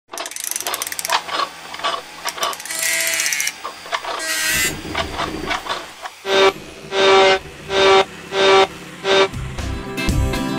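Mechanical sound effects for an animated intro: scattered clicks and ratcheting with two short whirs, then five evenly spaced motor whirs about 0.7 s apart. Guitar music comes in near the end.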